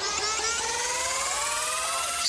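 Riser transition sound effect: a steady whir with several tones climbing slowly in pitch over a high hiss.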